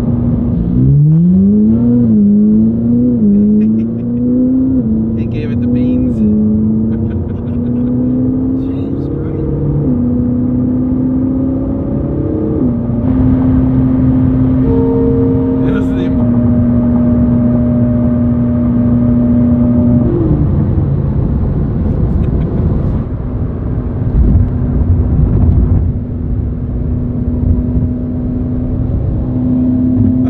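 Ferrari 458 Italia's V8 heard from inside the cabin. In the first several seconds it revs up through a quick run of upshifts, each rise in pitch cut short by a drop. It then runs at a steady note at highway cruising speed over road noise.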